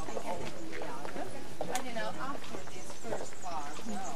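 A group walking on a paved path: scattered clicks of shoes on the pavement under the chatter of several voices.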